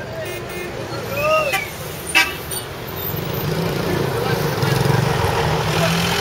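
Street traffic: a minibus taxi's engine running and growing louder as it pulls in close, with a short horn toot about two seconds in. Voices calling are heard early on.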